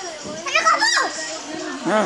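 A young child's high-pitched voice, a short sing-song exclamation with quick rises and falls in pitch about half a second in, and the child's voice starting again near the end.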